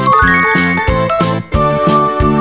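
Upbeat children's background music with a steady beat. Near the start, a quick rising run of tinkling chime notes plays over it.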